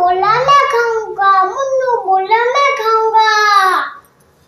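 A young girl singing on her own, without accompaniment, in three or four phrases of long, gliding held notes. She stops just before the end.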